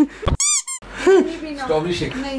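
A dull thump, then two quick high-pitched squeaks, the first longer than the second, with the room sound cut out around them, like an edited-in cartoon squeak effect. Voices follow.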